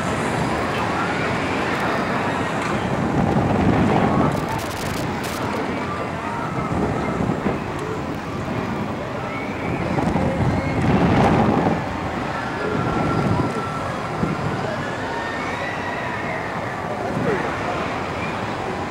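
Wind rushing over the on-ride camera's microphone as a Slingshot reverse-bungee capsule swings and tumbles, loud throughout with surges about three to four seconds in and again about eleven seconds in.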